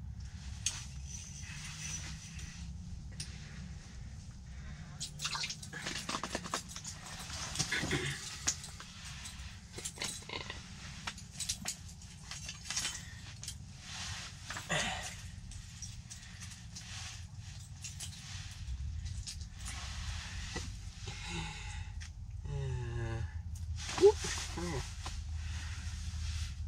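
Handling noise inside a fabric ice fishing shelter: rustling of clothing and scattered small clicks and taps of a short ice rod and tackle being rigged and set down, with one sharp click about two seconds before the end.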